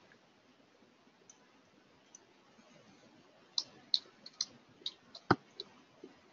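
Computer keyboard keys clicking as a short word is typed: about eight quick keystrokes over two seconds in the second half, one louder than the rest. A couple of faint single clicks come earlier.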